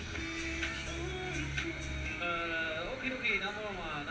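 Fairground ride music playing over loudspeakers, with a steady bass for the first two seconds. A voice with sliding pitch comes in over it about halfway through.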